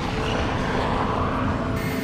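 A steady low rumble, with a few held notes of background music over it. The sound shifts slightly near the end, at a scene change.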